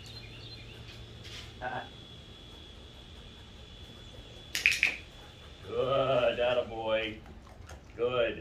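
A man's voice making short wordless sounds about six seconds in, a sharp brief noise a second before it, over a steady low hum with a faint high whine.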